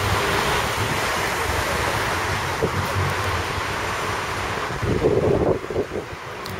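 Steady rushing noise of wind on the microphone over street noise, with a brief louder rustle about five seconds in.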